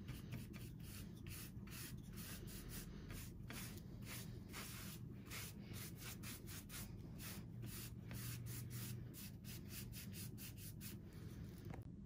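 Oval paintbrush scrubbing thick white chalk paint onto a cutout pumpkin: faint, quick, scratchy brush strokes, about three a second.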